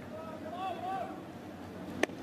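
Baseball stadium crowd ambience with scattered voices calling out, then one sharp smack right at the end as the pitch reaches the plate.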